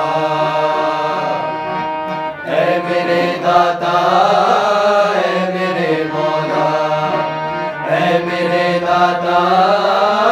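Several men singing together, their voices rising and falling in a chant-like melody, over the steady sustained drone of a harmonium.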